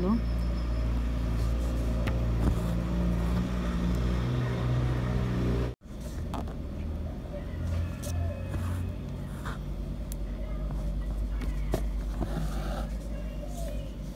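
A steady low engine-like rumble with level humming tones and faint voices. The sound drops out sharply for a moment about six seconds in.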